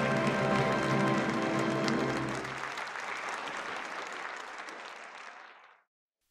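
Audience applauding over the orchestra's held closing chords. The orchestra stops about two and a half seconds in, and the applause fades away to silence near the end.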